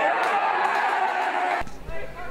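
Indistinct shouts and chatter of players and spectators at a football match, the jumble of many voices stopping abruptly about one and a half seconds in.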